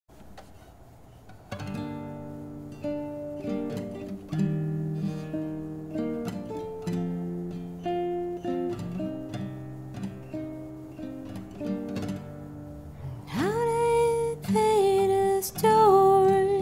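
Song intro on acoustic guitar, picking notes and chords. About three seconds before the end, a voice comes in with long, wordless held notes over the guitar.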